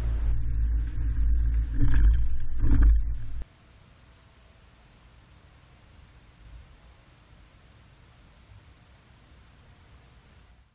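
2020 Chevrolet Tahoe driving over alternating speed bumps, heard at the hitch bike rack: a low rumble of vehicle and road with two louder jolts about two and three seconds in. The sound cuts off suddenly at about three and a half seconds, leaving only a faint hiss.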